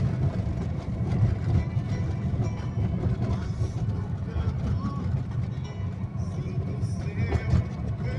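Steady low rumble of a car driving on a graded dirt road, heard from inside the cabin: engine and tyres on loose earth.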